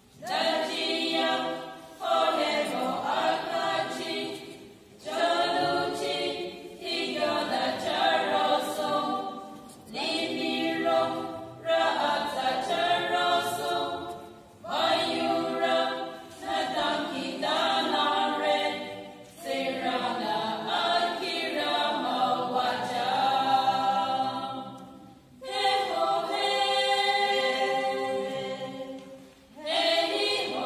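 A small group of women singing together unaccompanied, in sung phrases of a few seconds each with brief breaks between them.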